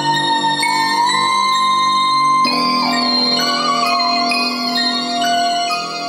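Beat melody playing back: sustained bell, piano and organ notes layered with a whistle-like synth lead that slides between notes and wavers in pitch, with no drums.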